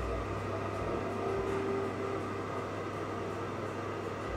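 Steady low hum of machinery with a faint short tone about a second in.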